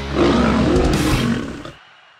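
A lion's roar used as a sound effect, rising out of the tail of rock guitar music and fading away before the end.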